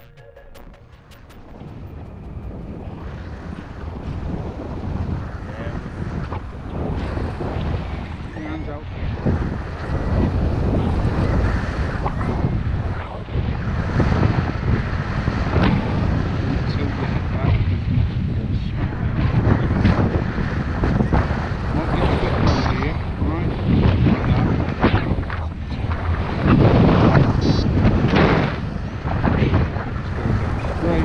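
Wind buffeting the microphone of a camera on a flying tandem paraglider: an uneven, gusting noise that swells over the first few seconds and then stays loud, surging in bursts.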